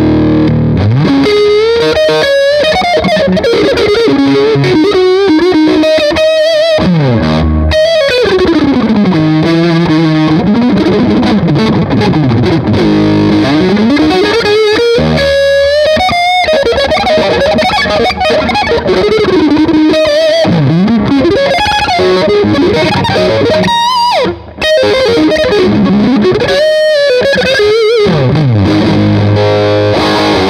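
Distorted electric guitar played through a Marshall JCM 800 Lead Series combo with Marshall G12 Vintage speakers, miked close at the grille. It is a loose lead riff with long slides, bends and held notes, with one brief gap about three quarters of the way through.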